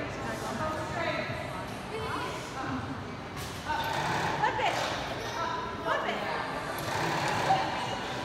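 Indistinct voices echoing in a large indoor hall, with a few louder vocal exclamations a few seconds in.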